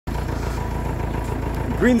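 A vehicle engine idling steadily with a low rumble, a voice starting to speak just before the end.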